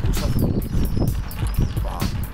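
Ice cubes clinking against a large glass pitcher as a long stirrer stirs the drink: a fast, irregular run of sharp clicks.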